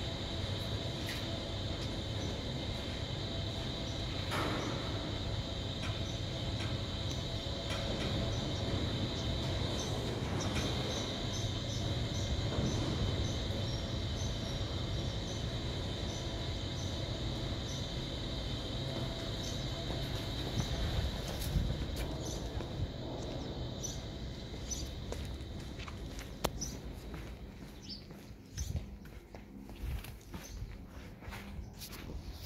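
Steady machine running noise: a low rumble with a thin high hum above it, easing off over the last few seconds.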